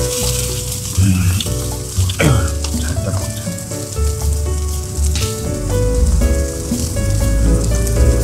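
Dak galbi (marinated chicken) sizzling on a charcoal grill, under background music with a deep bass line and changing held notes.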